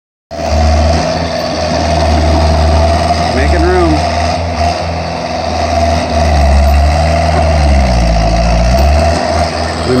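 Engine of a small yellow tracked machine running steadily with a deep rumble. A little past halfway its pitch sags, as under load, then picks back up.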